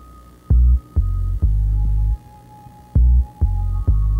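Minimal electronic music: deep, buzzing bass pulses in a stop-start rhythm, each opening with a sharp click, under a thin held high tone that drops to a lower pitch about a third of the way in.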